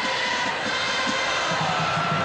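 Football stadium crowd cheering steadily during a pass play, with faint held tones under the noise of the crowd.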